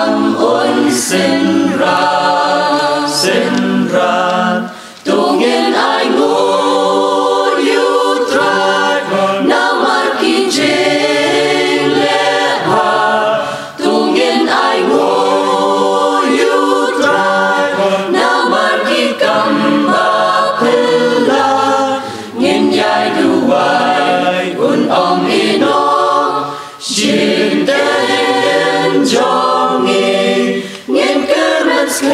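Mixed choir of women's and men's voices singing a hymn a cappella, in sustained phrases with brief breaks between them.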